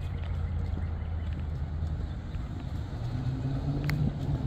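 Car engine running nearby as a low steady hum. A second, higher hum comes in about three seconds in.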